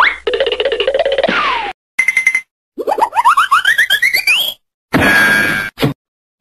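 A string of cartoon sound effects: a boing-like tone ending in a falling glide, a short beep, then a run of quick boings climbing steadily higher in pitch, followed by a noisy burst and a short thump just before the end.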